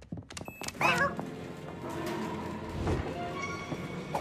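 Cartoon soundtrack: a quick patter of light taps, then a short squeaky character cry with wavering pitch about a second in, followed by background music with steady held notes.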